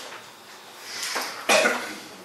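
A person coughing once, loudly and sharply, about a second and a half in.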